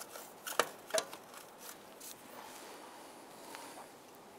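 A few light metallic clicks and knocks, two sharper ones close together about half a second and a second in, as a starter motor is worked back into the transmission bell housing; after that only a low background hiss.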